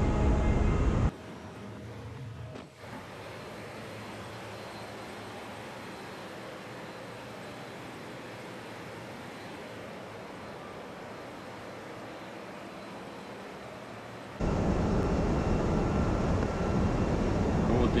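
Loud, steady machinery noise of a ship's engine room. It cuts abruptly to a much quieter steady hum about a second in, then returns suddenly at full loudness for the last few seconds.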